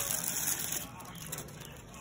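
Crinkly doll wrapping being crumpled and pulled open by hand: a burst of crinkling in the first second, then fainter rustling.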